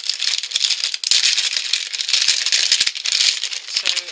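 Foil blind-bag packets holding die-cast toy cars crinkling and rattling as they are handled and shuffled together. The sound is a dense crackle that grows louder about a second in.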